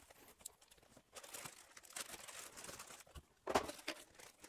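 Plastic packaging bags crinkling faintly as wrapped parcels are lifted out of a cardboard box, with a louder flurry of crinkling about three and a half seconds in.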